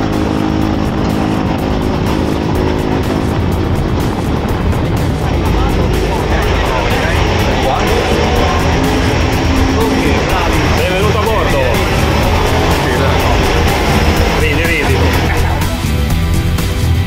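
A light aircraft's engine and propeller running steadily, heard with background music and voices.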